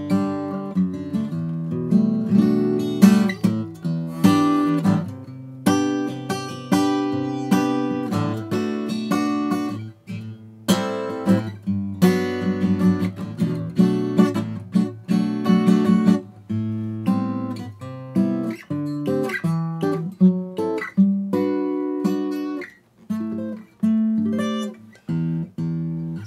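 Steel-string acoustic guitar being played, chords strummed and picked in a steady run with a few short breaks. It is recorded with the microphone's low-cut filter switched on, so the lowest bass is trimmed.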